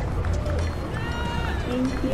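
City street ambience: a steady low rumble of traffic, with voices of passers-by and a few short pitched tones about a second in.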